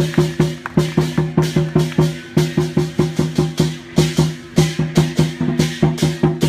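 Traditional Taiwanese temple procession percussion: a fast, steady beat of drum strokes with cymbals clashing about twice a second, playing for a shenjiang deity-general puppet troupe.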